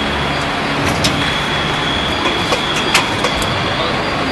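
300-ton hydraulic injection molding machine running: a steady mechanical noise with a high, steady whine, and two sharp clicks, about one and three seconds in.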